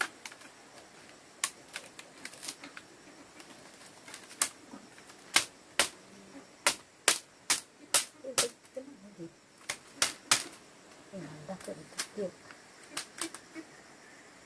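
Split bamboo strips clicking and clacking as they are woven into a panel. A run of louder, sharp knocks in the middle comes from a machete striking the bamboo.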